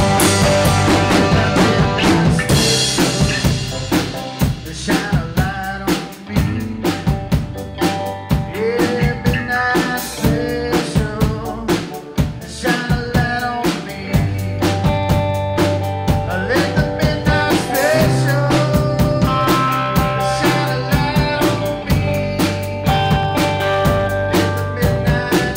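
Live band playing an instrumental passage: electric guitars over a drum kit keeping a steady beat, with held low notes underneath.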